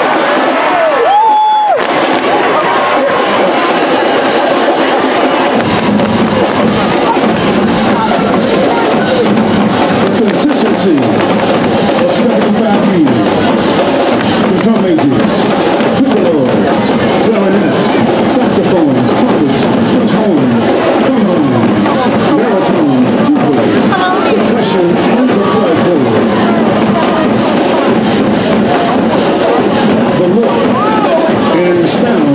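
A marching band playing on a stadium field beneath a loud crowd shouting and talking; the deeper band sound fills in about six seconds in.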